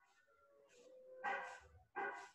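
A dog barking faintly in the background, one bark a little over a second in and another just at the end, part of a regular series about 0.7 s apart.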